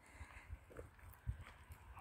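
Faint footsteps: a few soft, uneven thuds over quiet outdoor background.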